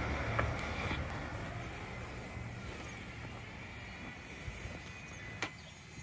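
Low, steady outdoor rumble that slowly fades, with a faint steady high tone over it and a single click near the end.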